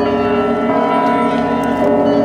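Church bells pealing, many pitches ringing together in a dense, steady sound, the mix shifting slightly about a second in and again near the end.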